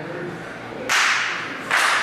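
Two sharp, echoing slap-like cracks, one about a second in and another near the end, each ringing off briefly in a large hall.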